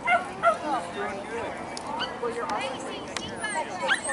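A dog yipping and whining in short, high, rising and falling cries, the loudest near the start, with people talking in the background.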